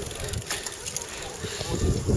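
Wind buffeting an outdoor microphone: an uneven low rumble that swells near the end.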